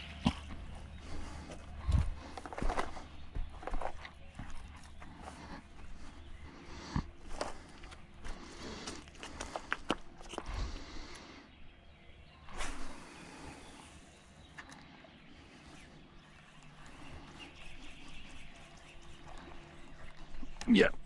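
Scattered light knocks, clicks and scrapes of an angler's gear and footing on riverbank rocks, most of them in the first half.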